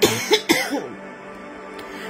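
A person coughing in a short burst of two or three coughs near the start, over soft, steady background music.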